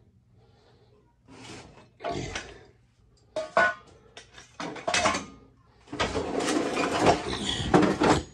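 Galvanized sheet-metal bin loaded with tools and chain being pulled across a concrete floor: several short scrapes and clanks, then a louder continuous scraping slide for the last two seconds or so.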